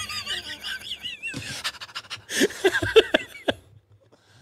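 Two men laughing hard: a high, breathy, wavering laugh in the first second, then several bursts of laughter that die away shortly before the end.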